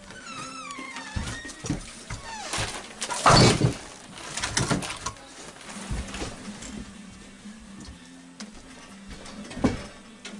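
Background music with a few sharp knocks and thuds on top, the loudest about three seconds in: split firewood being handled and stacked into a wooden wood box beside a wood stove.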